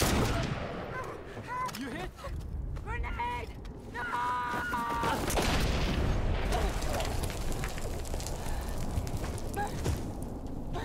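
Film battle soundtrack: rifle gunfire and shouting voices, then an explosion about five seconds in whose heavy low rumble carries on to the end.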